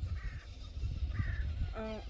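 Two short bird calls, about a second apart, over a steady low rumble.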